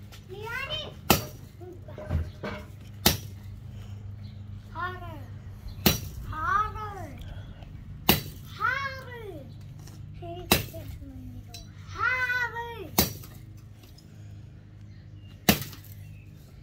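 Machete blade chopping into a small tree trunk near its base, seven sharp strikes about two to two and a half seconds apart. A child's voice calls out between the strikes.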